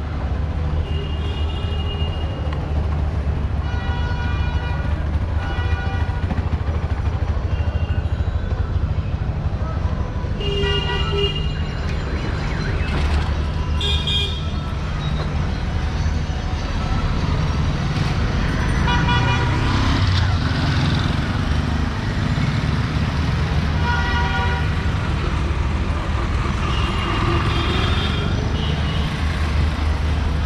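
Busy street traffic with vehicle horns honking again and again, short toots scattered throughout, over a steady low rumble of engines.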